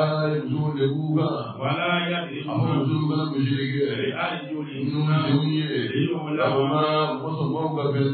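Men's voices chanting a repeated Islamic devotional refrain in a continuous line on a low, steady pitch, without a break.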